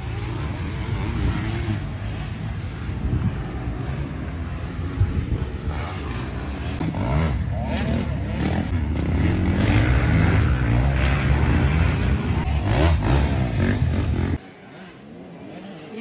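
Motocross dirt bikes on a dirt track, engines revving up and down in pitch. The sound is loudest in the second half and cuts off suddenly near the end.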